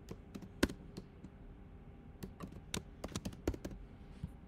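Computer keyboard keystrokes: one sharp keystroke about half a second in, then a quick run of key presses from about two seconds in until near the end, as a word is typed.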